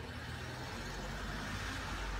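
Steady low background hum of the room, with no distinct sounds in it.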